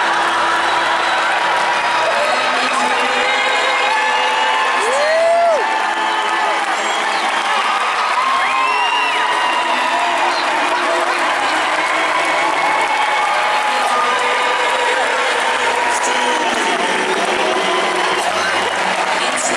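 Large arena crowd cheering and applauding in a steady din, with scattered whoops rising above it.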